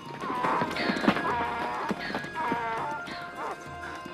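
A donkey's hooves scrabbling and clattering on rock, with loose stones knocked free, and the animal crying out several times in a wavering, high pitch. This is a cartoon sound effect over background music.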